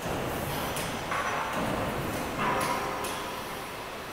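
Workshop background noise: a steady, even machinery hum with a few faint knocks and two brief hissing swells, about a second in and again about two and a half seconds in.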